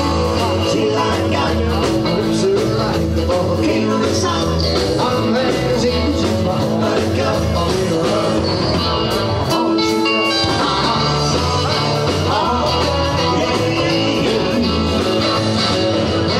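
Live rock and roll band playing a fast number: electric guitar, bass and drums with a singer. The bass drops out briefly about ten seconds in.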